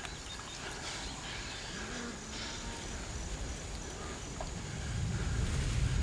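Outdoor field ambience: a steady low wind rumble that swells near the end, with a faint, high, evenly pulsing insect chirp through the first few seconds.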